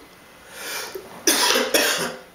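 A young child coughing twice in quick succession, a little over a second in.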